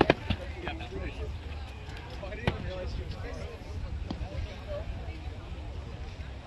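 Padded foam boffer swords smacking against padded shields in a sparring bout: several sharp smacks, the loudest in a quick cluster at the start and another about two and a half seconds in. Faint talk goes on in the background.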